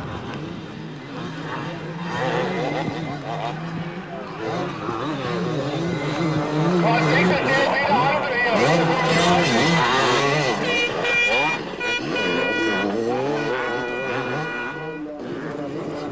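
Enduro motorcycle engines revving up and down as riders work through a dirt motocross track, louder in the middle. A run of short, high steady tones repeats over the last few seconds.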